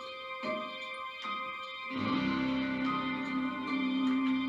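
Instrumental intro of a backing track. Single plucked notes ring out one after another, then about halfway through a fuller held chord with a steady low note comes in and sustains.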